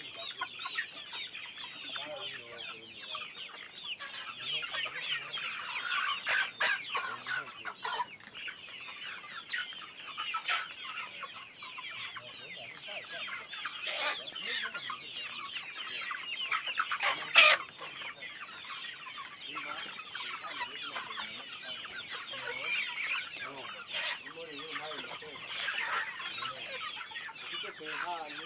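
A large flock of chickens clucking continuously, many overlapping calls at once, with a brief louder sharp burst a little past halfway through.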